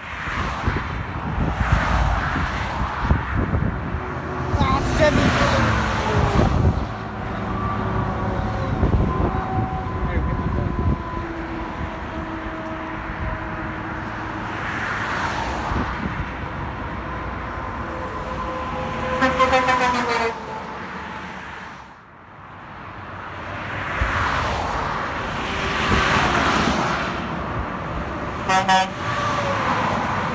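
Highway traffic: cars and semi-trucks passing close by one after another, each swelling and fading. A steady horn of several notes sounds through the middle part, from about a quarter of the way in until about two-thirds through.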